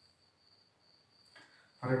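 A chirping insect: a thin, high-pitched, steady trill that breaks off and comes back, with a man's voice starting near the end.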